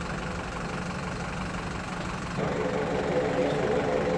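Turboprop engines of a C-27J Spartan military transport running as it taxis: a steady drone. A pitched hum joins about halfway through and the sound grows louder.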